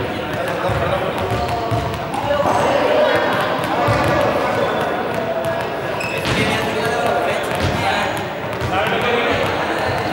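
Indistinct voices echoing in a large sports hall, with scattered thuds of small juggling balls dropping and bouncing on the hard floor.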